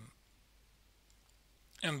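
A man's lecturing voice trails off at the start and resumes near the end, with a pause of faint room tone between.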